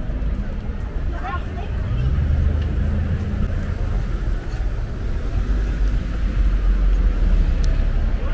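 City street traffic: cars and a pickup truck driving past a downtown intersection, a steady low engine and tyre rumble that grows louder near the end, with people's voices nearby.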